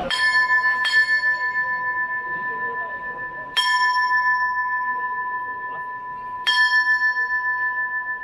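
The brass bell on the front of a processional throne is struck four times: two strokes close together at the start, then one after about three seconds and another after about three more. Each stroke rings on with a clear, steady tone. The strokes are the signal to the throne bearers.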